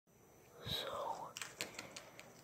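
A faint, breathy whisper-like sound, followed by three light clicks in the second half.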